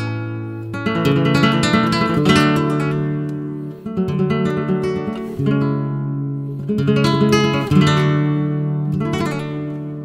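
Solo nylon-string flamenco guitar playing a slow piece: chords struck one after another and left to ring and fade, with single plucked notes between them.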